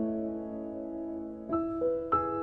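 Slow background piano music: held notes fade away, and new notes are struck about one and a half seconds in.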